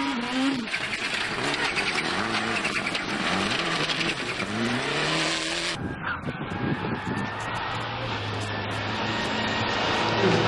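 Rally car on a gravel stage, its engine revving up through the gears in several rising sweeps over the rush of tyres on loose gravel. About six seconds in the sound changes abruptly to a more distant car holding a steadier engine note.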